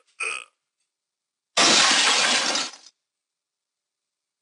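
A glass-shattering sound effect: one loud crash of about a second that dies away. Two short high chirps come just before it.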